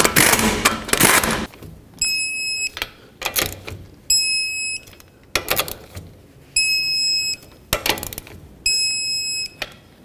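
Pneumatic impact gun hammering a lug nut tight for about a second and a half. Then a torque wrench brings the four lug nuts to 80 foot-pounds, with a few short clicks and four steady electronic beeps about two seconds apart, each lasting under a second: the wrench signalling that the set torque is reached on each nut.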